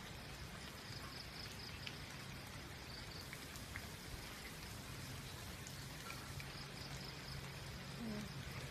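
Rain falling steadily, with scattered individual drops landing close by.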